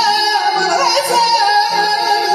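Live wedding music: a singer's ornamented, wavering vocal line over steady held instrumental tones.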